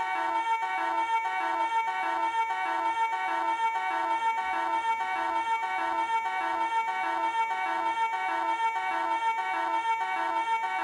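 Live electric guitars playing a repeating figure of about three notes a second over a steady sustained high drone note.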